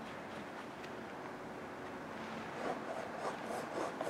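Faint scratchy rubbing of a paintbrush working acrylic paint, a little busier near the end.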